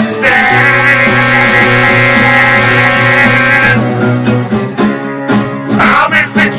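Acoustic guitar music: a chord rings out, held for about three seconds, then rhythmic strumming picks up again near the middle.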